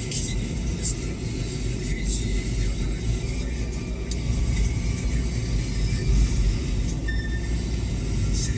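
Car cabin noise while driving: a steady low rumble of engine and tyres on the road, with a faint hiss and a few brief high crackles over it.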